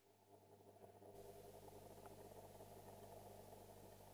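Faint surface hiss of a shellac 78 rpm record under a gramophone needle running in the lead-in groove. The hiss sets in about a second in and then holds steady.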